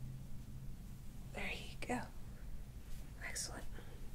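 Quiet whispered speech: two short breathy utterances, the first about a second in and the second near the end, over a faint steady low hum.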